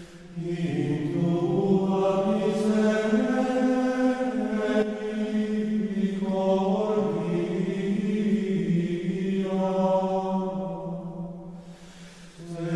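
Sung chant over the closing credits: long, held vocal notes that move slowly in pitch, in two long phrases, the second fading out near the end.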